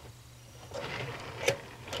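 Fingers pushing yarn wraps down on the plastic pegs of a double knit loom: a soft rustle of yarn against plastic, with one sharp click about one and a half seconds in.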